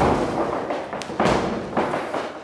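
A run of heavy thuds at a steady pace, about one every 0.6 seconds, with a lighter tap between two of them.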